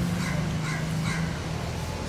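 Three short animal calls in quick succession, about 0.4 s apart, over a steady low hum.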